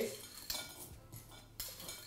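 A spoon clinking and scraping faintly against a dish a couple of times as food is spooned out.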